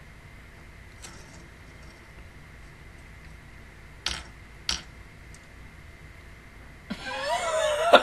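A woman stifling laughter: two short sharp bursts of breath about half a second apart just past the middle, then a rising voiced laugh about a second before the end that breaks into rhythmic ha-ha-ha.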